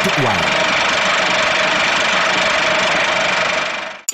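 Steady, loud rushing noise with a faint high tone running through it, the sound bed of a TV rating card, fading away shortly before the end; the last word of the rating announcement is heard at the very start.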